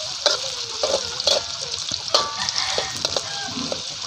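Sliced shallots and ginger sizzling in hot oil in an aluminium wok, with a slotted metal spatula scraping and knocking against the pan several times as they are stirred.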